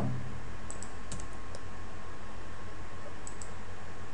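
A few light computer keyboard clicks, several about a second in and a pair a little after three seconds, over a steady low electrical hum.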